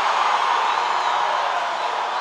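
A large crowd cheering and applauding, a steady, even wash of many voices and clapping.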